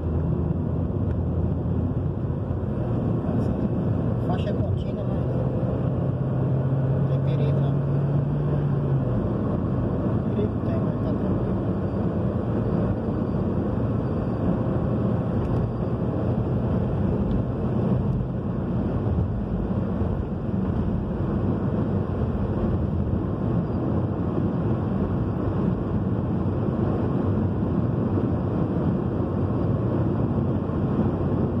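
Steady road and engine noise inside a moving car's cabin at highway speed, a low rumble of tyres and engine. A low drone stands out from about two to nine seconds in, then fades back into the rumble.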